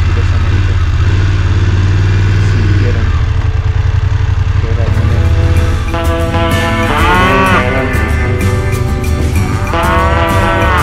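BMW F 850 GS parallel-twin engine running steadily at low revs as the bike creeps forward. Background music with guitar comes in about halfway through.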